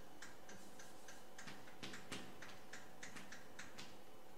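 Chalk writing on a blackboard: a quick, irregular run of short taps and scratches as each stroke of a formula is made.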